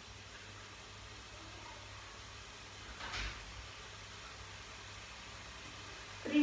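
Quiet kitchen room tone with a faint steady hum and hiss, broken once about three seconds in by a brief soft noise.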